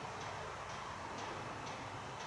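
Steady, faint trackside background noise with a faint, regular ticking about twice a second.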